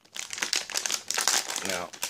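Plastic anti-static bag crinkling in quick irregular rustles as hands handle it and work it open.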